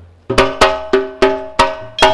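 Music starting with struck metal percussion, about six sharp ringing notes at roughly three a second, in the manner of gamelan metallophones.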